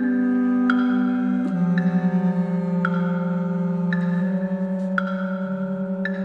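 Contemporary chamber ensemble of bass clarinet, horn, percussion and double bass playing: long held low notes, one of them wavering fast, under a struck metallic percussion note that rings out about once a second.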